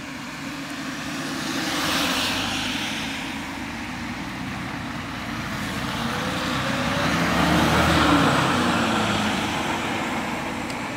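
Road traffic passing: one vehicle goes by about two seconds in, and a louder one with audible engine tone goes by around eight seconds in.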